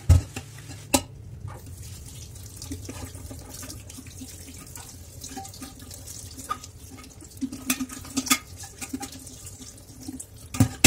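Kitchen tap running into a stainless steel sink as an enamel kettle is washed and rinsed. A few sharp knocks of the kettle against the metal sink cut through the water: a loud one right at the start, another about a second in, and several close together near the end.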